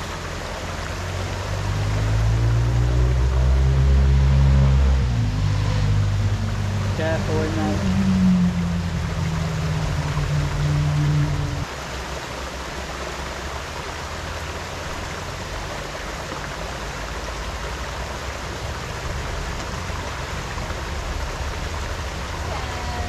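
Steady rushing of a small woodland waterfall and stream. For the first half a louder low drone that wavers in pitch runs over it and cuts off suddenly about halfway through.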